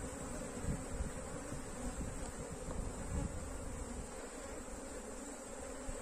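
Honeybees buzzing around an opened hive, a steady hum from many bees on and around the exposed frames. There is uneven low rumbling during the first four seconds.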